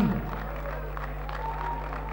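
Audience applauding in a large hall, an even wash of clapping over a steady low hum.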